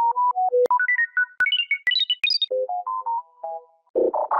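A Samsung phone alert tone in its "Upside Down" edited variation: a quick run of short synth notes that climbs in steps from low to high, then drops back to a shorter low phrase near the end.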